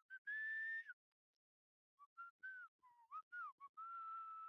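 A person whistling a short tune, faintly. One long held note comes first, then a quick run of short notes that bend up and down, ending on another long held note.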